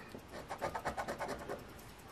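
A coin scratching the coating off a scratch-off lottery ticket: a quick run of short, faint rasping strokes from about half a second in.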